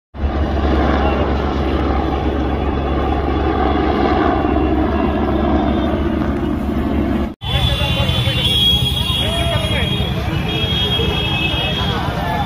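Helicopter flying low overhead, its rotor and turbine engine making a loud, steady, deep noise for about seven seconds, which cuts off suddenly. After the cut come crowd voices and road traffic, with a few held high tones.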